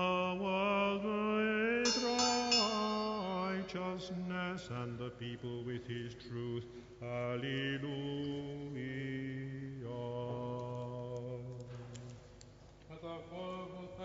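Byzantine chant: a slow, melismatic sung melody over a steady held drone note (ison). The drone drops to a lower pitch about five seconds in.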